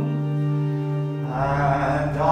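Church pipe organ holding a steady chord, with a man's singing voice coming in over it just past halfway.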